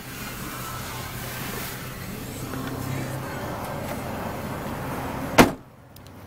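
Steady noise, then the Mazda 3's car door shut with a single loud thud near the end.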